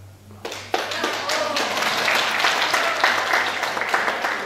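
Audience applauding, starting about half a second in and continuing steadily.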